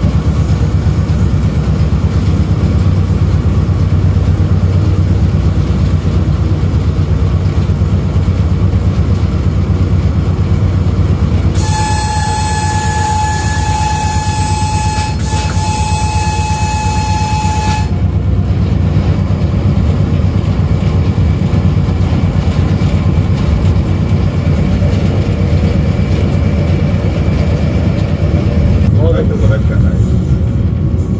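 Steady low running rumble of the AGE-30 railcar, heard from its driver's cab. About twelve seconds in, the horn sounds one steady blast of about six seconds, broken for an instant partway through.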